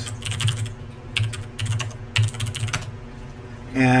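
Typing on a computer keyboard: a run of irregularly spaced keystrokes as a short command is entered.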